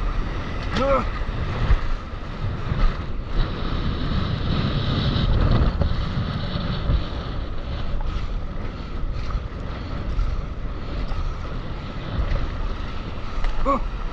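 Wind buffeting the microphone over rushing surf and whitewater splashing around a stand-up paddleboard being paddled out through breaking waves. A short vocal sound comes about a second in, and an "Oh!" near the end.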